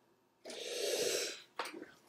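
A man's audible breath out into the microphone, one smooth exhale of about a second that swells and fades, followed by a few faint clicks.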